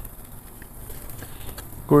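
A knife slicing through grilled beef chuck: a few faint, light ticks over low background noise.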